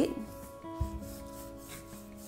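A flat paintbrush rubbing across canvas in side-to-side strokes of acrylic paint, over soft background music with sustained notes.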